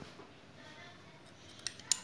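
Salt being sprinkled from a small plastic container into a stainless steel mixer bowl of flour, quietly, with a few light sharp clicks near the end.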